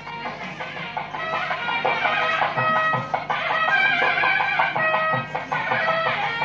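Music: a melody of held notes stepping from pitch to pitch, growing louder about a second in.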